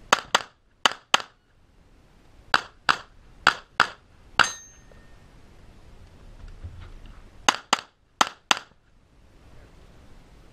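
Handgun shots fired in quick pairs: two pairs, then five shots, a gap of about three seconds, then two more pairs near the end. The fifth shot of the middle string is followed by a brief metallic ring.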